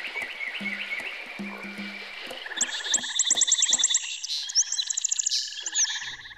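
Swamp-jungle soundscape of frogs croaking in short repeated pulses. From about halfway, fast, high chirping calls come in over them.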